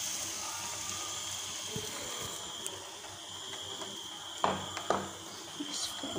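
Battered potato chop sizzling steadily as it deep-fries in hot oil in a kadai. Two sharp knocks about half a second apart near the end.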